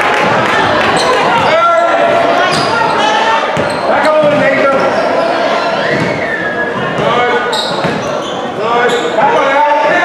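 Basketball game sounds in a large gym: the ball bouncing on the hardwood-style court while players and people on the sideline shout and call out over each other.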